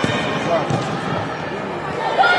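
Voices calling out over a hall full of echoing chatter during an indoor football match, with a few dull thuds of the ball being kicked and bouncing on artificial turf.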